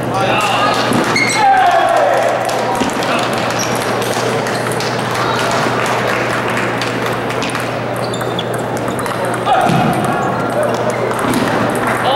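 Celluloid-free plastic table tennis ball clicking off rubber paddles and the table during a fast rally, sharp ticks coming one after another, with voices carrying around a large echoing hall.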